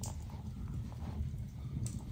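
Faint handling sounds of hand-sewing leather: thread drawn through the stitching holes and a couple of light needle clicks, over a low steady hum.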